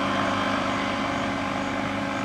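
A vehicle engine idling with a steady, even hum.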